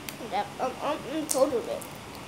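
A child's voice making a few short, unclear syllables, with a faint click at the start.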